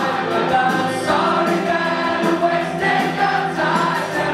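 Live indie rock band playing electric guitars, bass and drums at full volume, with voices singing over it.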